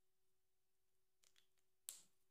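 Near silence with a faint steady hum, then a few small clicks and one sharp click near the end as the cap of an alcohol marker is snapped on.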